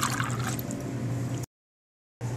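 Simple syrup poured from a pour-spout bottle and a steel jigger into a glass, liquid splashing and trickling in, fading out within the first second. The sound then cuts off abruptly to dead silence about a second and a half in.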